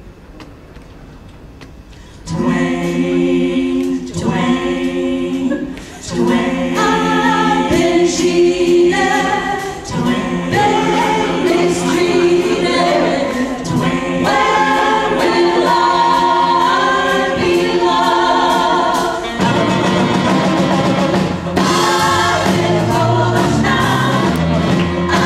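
A group of women singing together in harmony into microphones, coming in loudly about two seconds in.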